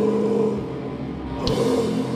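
Live heavy metal band playing: distorted electric guitars and bass hold a low, sustained chord that dips briefly in the middle, and a drum and cymbal hit lands about one and a half seconds in.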